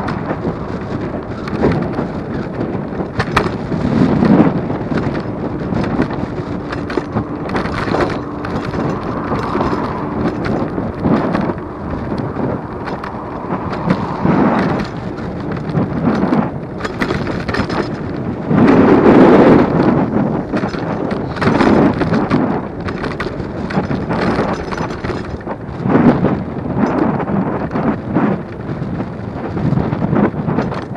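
Wind buffeting the microphone and road rumble from a moving Superpedestrian electric scooter, with repeated knocks and thumps from bumps in the road surface. The noise comes in uneven surges, loudest a little before the two-thirds point.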